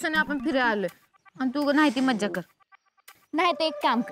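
A high-pitched voice speaking in three short phrases of about a second each, with brief pauses between them.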